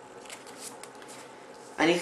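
A pause in speech: faint steady room noise with a few soft, brief rustles, then a man's voice starts speaking near the end.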